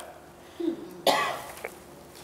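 A single cough, preceded by a short throat sound, in a quiet gap between sentences.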